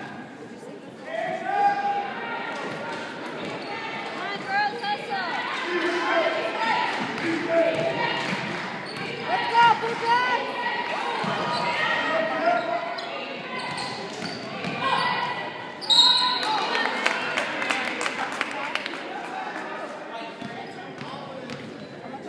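Basketball being dribbled on a hardwood gym floor, with players and coaches shouting over the echoing hall. About two-thirds of the way through, a sharp high referee's whistle, calling a foul.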